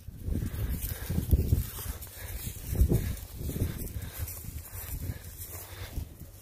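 Beef cows moving and feeding in hay and straw close by: irregular low rustling and shuffling.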